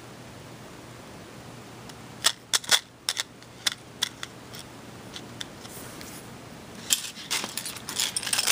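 A carded pack of small metal jewelry charms handled over a cutting mat: a quick string of sharp clicks and taps from about two seconds in, and a few more near the end.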